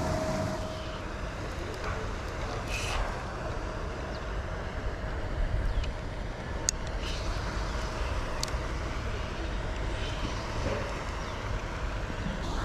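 Low, steady outdoor rumble with a few faint, sharp clicks.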